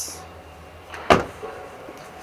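The rear door of a 2011 Nissan Navara double-cab pickup is shut, giving a single sharp thud about a second in.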